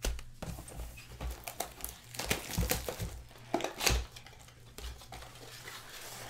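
Foil wrapper of a Panini Preferred trading-card pack crinkling and tearing as it is opened by hand, in a run of irregular sharp crackles, the loudest about two and a half and four seconds in.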